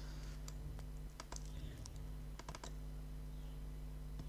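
A few light clicks from working a computer, in two small clusters about a second in and about two and a half seconds in, over a steady low hum.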